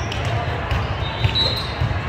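Echoing ambience of a large hall full of volleyball courts: irregular thuds of volleyballs being hit and bouncing, under a steady murmur of voices. A short high squeak, like a shoe on the court, comes about one and a half seconds in.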